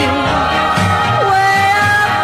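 Music from an early-1960s pop record: long held sung notes that slide up and down between pitches over a bass line.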